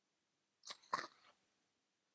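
A person's voice: two brief, faint vocal sounds about a second in, a short high one followed by a slightly longer pitched one.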